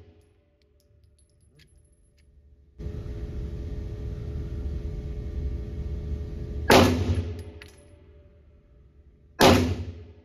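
Two single shots from a Tisas 1911 Night Stalker 9mm pistol, a little under three seconds apart, each a sharp crack with a short echo, and the tail of an earlier shot fading at the start. A steady noise runs underneath from about three seconds in until shortly after the first shot.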